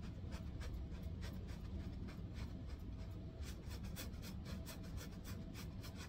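Paintbrush dabbing and stroking on a stretched canvas: a run of short, irregular scratchy ticks that come thicker in the second half, over a low steady hum.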